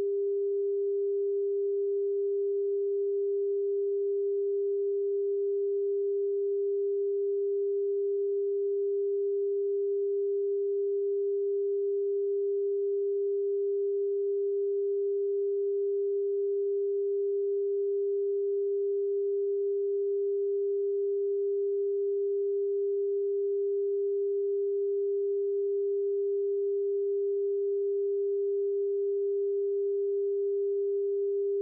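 Broadcast test tone accompanying a PM5544 test card: one steady, unbroken pure tone at a single mid-low pitch.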